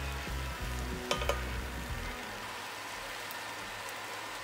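Mushrooms sizzling in a thick black bean sauce in a frying pan, stirred with a wooden spoon, with a few sharp spoon scrapes or taps against the pan about a second in.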